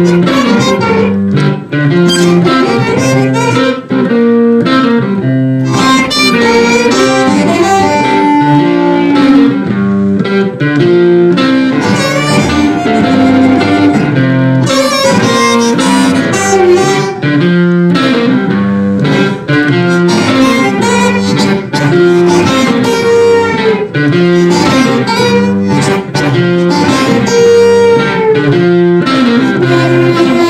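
Amplified blues harmonica, cupped together with a handheld microphone, playing an instrumental passage over rhythm electric guitar. The music is loud and steady throughout.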